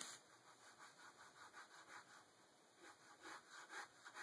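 Ballpoint pen scratching across paper in rapid, quick strokes, several a second, faint throughout, with the firmest strokes at the very start and about three seconds in.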